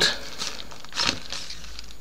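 Thin plastic protective sheet around a tablet crinkling in a few short bursts as the tablet is handled and lifted out of its box.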